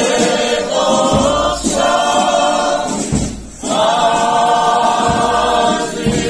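Choir singing a slow hymn in long held phrases, with short breaks about one and a half and three seconds in.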